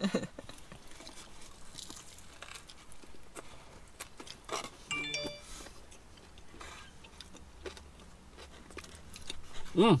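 Quiet chewing of a big mouthful of crispy fish burger, with scattered faint mouth clicks, and a brief pitched sound about five seconds in.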